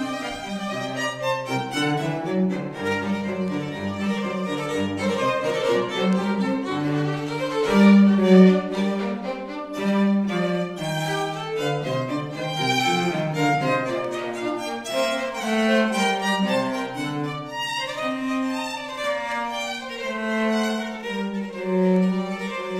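A small ensemble of bowed strings, violin and cello among them, playing an instrumental piece together with sustained, overlapping notes.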